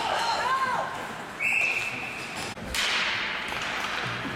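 A whistle blows one short, steady note about a second and a half in, followed about a second later by a single sharp crack that echoes through the ice rink. Voices shout in the first second.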